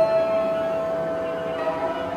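Contemporary music for cello and electronics: a single steady high tone with a fainter higher tone above it begins with a sharp attack and is held for nearly two seconds, slowly fading.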